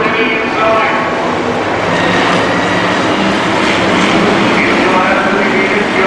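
Several hobby stock race cars' V8 engines running hard together around a dirt oval, their pitch rising and falling as they lift and accelerate through the turns.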